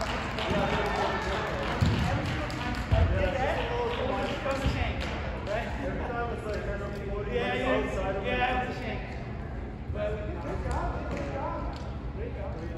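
Indistinct voices of people talking, echoing in a large indoor hall, with a few dull thumps of volleyballs being hit or landing in the first few seconds.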